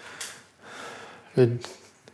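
Hesitant male speech: a quick audible intake of breath, then a single spoken word about a second and a half in.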